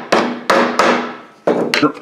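Rubber mallet tapping the lid down onto a quart metal paint can: three blows about a third of a second apart, each ringing briefly through the can. Near the end comes a shorter clatter of the can being handled.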